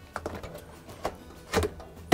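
A hand squeezing and working a corrugated rubber washer hose loose from its port on the outer tub: three short rubbing and clicking handling noises over a low hum.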